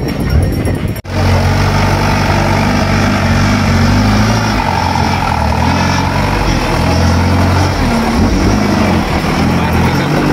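Off-road competition buggy's engine running hard under load, its pitch wavering as the big mud tyres work through a muddy ditch. The sound breaks off for an instant about a second in, then resumes.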